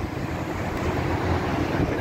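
City road traffic: a steady rumble of passing cars that grows slowly louder.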